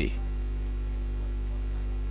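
Steady low electrical mains hum with a buzzing stack of overtones, heard alone in a pause in the talk.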